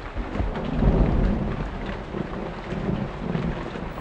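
Heavy rain falling steadily, with a low rumble of thunder that swells about a second in and rolls on underneath.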